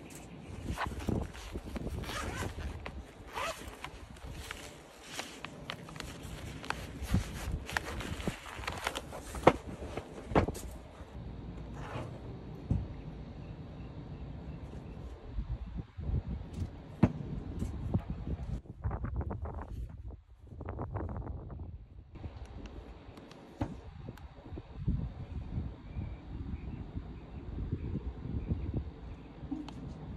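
Zipper on a soft fabric carrying case being unzipped, a run of quick scratchy strokes in the first part. Then quieter rustling and light knocks as a handheld OBD2 scan tool and its cable are lifted out and handled.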